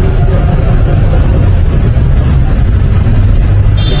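Steady low rumble of vehicles driving slowly through a covered concrete parking deck: a motorcycle passing, then a large bus pulling in.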